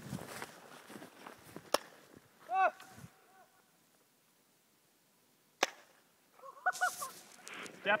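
Two paintball marker shots, each a single sharp pop, about four seconds apart, with distant shouted voices after each.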